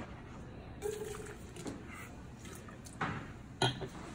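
A stemmed wine glass set down on a wooden barrel head: a couple of light knocks near the end. A short low hum from the taster comes about a second in.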